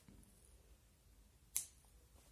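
A single sharp snip of small scissors cutting embroidery thread, about one and a half seconds in, against an otherwise very quiet room.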